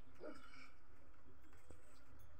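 A short animal call about a quarter of a second in, over a faint, steady outdoor background.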